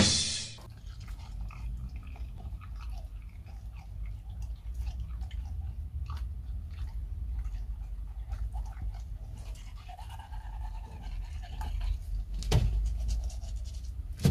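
A golden retriever's teeth being brushed: a steady run of small, irregular scratchy brush strokes on the teeth, with one louder knock near the end.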